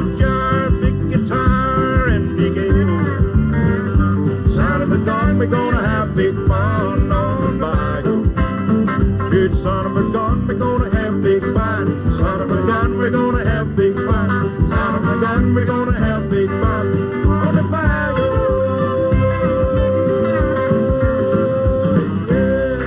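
Live country band music with guitar, the melody sliding between notes, settling into one long held note for the last few seconds.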